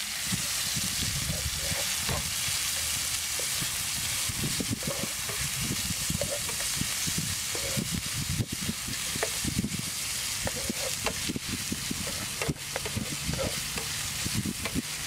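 Sliced beef and garlic sizzling in a nonstick frying pan, with a spatula stirring and scraping against the pan in quick, irregular strokes.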